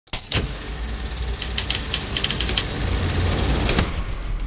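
Opening logo sound effect: a steady mechanical rumble and rattle with many sharp clicks and a high hiss, starting abruptly just after the start.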